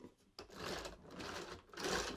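Plastic rubbing and rattling as 3D-printed parts are handled and fitted onto a drive-shaft assembly, in three short bursts.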